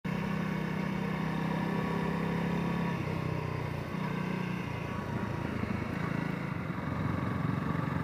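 Honda CRF250L single-cylinder motorcycle engine running steadily while riding, heard from the bike itself along with road and wind noise. The engine note drops about three seconds in and shifts again a second later.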